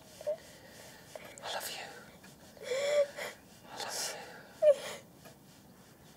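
A boy crying: breathy gasping breaths and a few short, high-pitched sobs, the loudest near the end.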